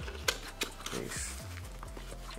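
Cardboard mailer box being folded shut, its flap pulled and tucked in: a few short cardboard scrapes and taps, with music playing in the background.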